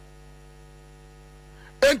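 Steady electrical hum made of several fixed tones under a faint hiss, in a pause in a man's speech. His voice comes back near the end.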